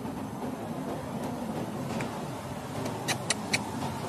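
Steady low background rumble, with three quick high-pitched chirps or squeaks in close succession about three seconds in.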